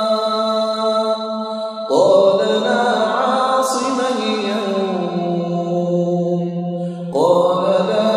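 A man's voice reciting Qur'anic Arabic in a melodic chant, in long held phrases. The verses are most likely those about Noah calling his son aboard the Ark. A new phrase starts about two seconds in and another near the end, and the middle phrase sinks lower and is held.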